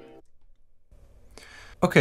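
Playback of a recorded song stops abruptly on a held chord just after the start. A short quiet gap follows, then a single click, and a man's voice starts near the end.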